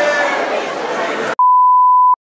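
Group of people chatting, then a loud, steady single-pitch electronic beep that starts suddenly a little over a second in and blots out all other sound.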